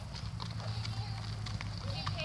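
Haflinger horse walking on a gravel drive: a run of irregular hoofbeats.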